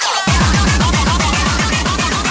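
Uptempo hardcore track playing loud: after a brief break just after the start, a rapid roll of distorted kick drums, each dropping in pitch, under busy synth sounds.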